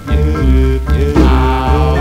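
1950s doo-wop vocal group singing in close harmony, with held chords over short, repeated low bass notes.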